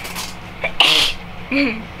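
A person sneezing once, sharply, about a second in, followed by a short sound of the voice.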